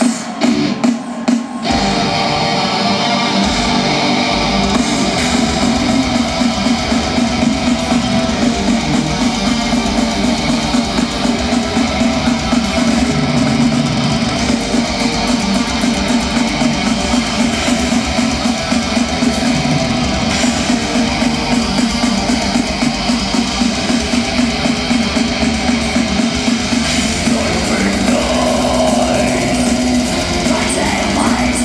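Symphonic black metal band playing live through a PA: a few sharp full-band hits in the first two seconds, then the song launches into continuous distorted electric guitars, bass and rapid drumming.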